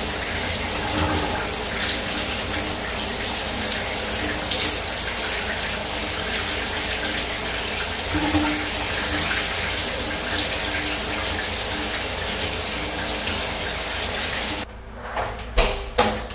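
Shower running: a steady spray of water falling in a small tiled shower stall, heard up close, which stops abruptly near the end, followed by a single knock.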